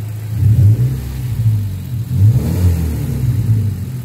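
Mazda MX-5 Miata's four-cylinder engine revved in several quick blips while parked, settling back toward idle at the end. The iForce throttle controller is not yet plugged in, so this is the stock throttle response.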